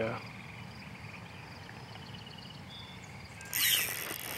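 A faint steady insect chorus. About three and a half seconds in, a spinning reel's drag suddenly starts to buzz loudly as a hooked flathead catfish pulls line off it.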